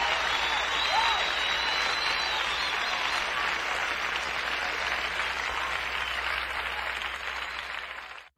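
Large concert audience applauding, with a few whistles over the first couple of seconds; the applause slowly dies down.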